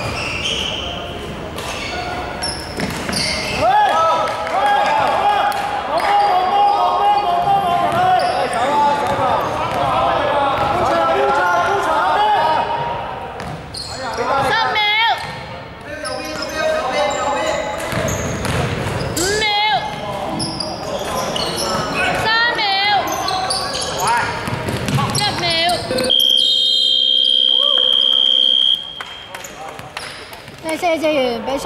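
Indoor basketball play: players shouting, the ball bouncing and shoes squeaking on the court floor, echoing in the hall. About 26 s in, a loud steady electronic buzzer sounds for nearly three seconds and stops suddenly, the end-of-game horn.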